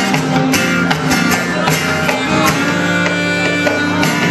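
Live band playing an instrumental passage through a PA: amplified electric guitar over sustained bass notes with a steady, regular beat.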